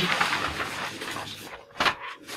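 Sheets of exam paper rustling as they are handled and passed along, with one short sharp sound near the end.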